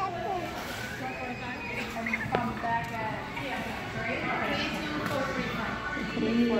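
Children's voices and chatter in the background, several overlapping and rising and falling, with one sharp click about two and a half seconds in.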